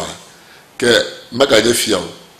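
A man speaking in Ewe in short phrases, with a brief pause near the start.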